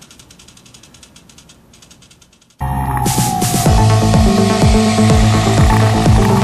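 Hobby servo motor turning a GoPro camera mount, heard as faint rapid ticking of its gears. About two and a half seconds in, it cuts abruptly to loud background music with a steady beat.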